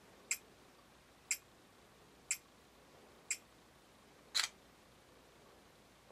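Camera self-timer counting down with four short ticks one second apart, then the shutter release sounding about four and a half seconds in as the timed exposure begins.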